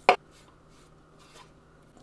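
A single sharp clack at the very start, from the knife and wooden cutting board knocking against a stainless steel mixing bowl while chopped herbs are scraped into it. Only faint sounds follow.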